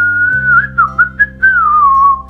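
A man whistling loudly: one long high note that breaks into a few short chirps midway, then a long note sliding down in pitch near the end, over soft background music.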